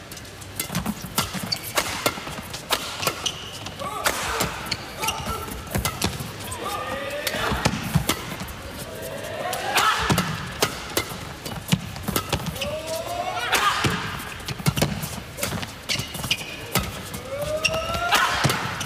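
Badminton doubles rally: rackets strike the shuttlecock again and again in quick, sharp hits. Several times, players' shoes squeal briefly on the court surface as they lunge and change direction.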